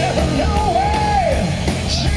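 Hard rock band playing live and loud: drums, bass and distorted electric guitars, with one long wavering high note bending above the band and dropping away about two-thirds of the way through.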